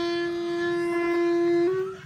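Beginner's clarinet holding one steady note, a G, for nearly two seconds, its pitch lifting slightly just before it stops.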